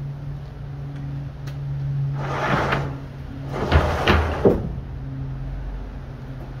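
Plywood truck bed slide pushed in on one-inch roller bearings: a rolling run about two seconds in, then a second, longer push ending in three knocks as the slide seats home.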